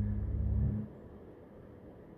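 Double bass played with a bow, holding a low note that stops about three-quarters of a second in.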